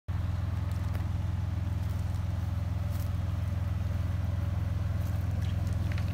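Pickup truck engine idling: a steady low rumble with an even pulse.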